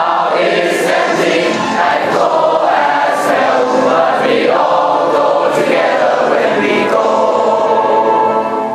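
A group of teenage voices, boys and girls together, singing as a choir.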